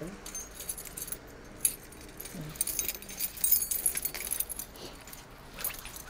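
A bunch of metal keys jingling and clinking as they are handled, busiest in the middle stretch.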